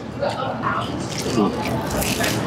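People chewing and eating pizza, with wet mouth sounds and faint hummed or murmured voices.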